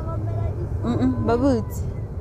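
Steady low rumble of a car moving slowly, heard from inside the car, with a voice talking over it about a second in.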